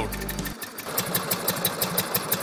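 BMW R75 sidecar motorcycle's 745 cc opposed-twin engine idling with an even, pulsing beat. The music under it drops out about half a second in.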